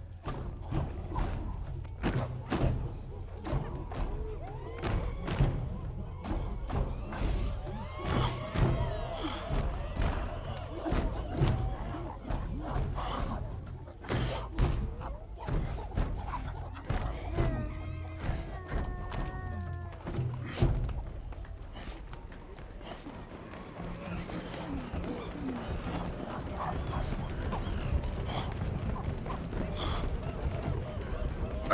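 Film soundtrack: repeated heavy thumps, one or two a second, mixed with ape-like vocal calls over music. The thumps die away about twenty seconds in, leaving the music and a low hum.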